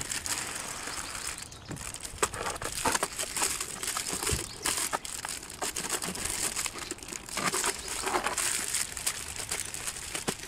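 Plastic mailer bag crinkling and rustling as it is handled and pulled around a coffee can, in irregular crackles with louder stretches a few seconds in and again about eight seconds in.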